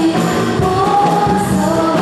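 A group of women singing into microphones with live band backing, holding long sung notes over a steady drum beat.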